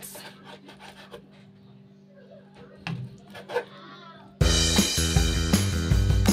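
A kitchen knife cuts raw chicken on a wooden cutting board, making a few faint knocks and scrapes. About four seconds in, background music starts abruptly and is louder than everything else.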